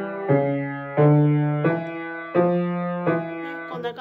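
Piano played with the left hand alone, a simple accompaniment figure: six notes at an even, unhurried pace, about two-thirds of a second apart, each ringing and fading into the next.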